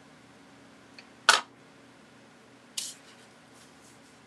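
A sharp click about a second in, then a softer, higher click near three seconds, with a few faint ticks near the end: small craft tools being handled and set down on the work table.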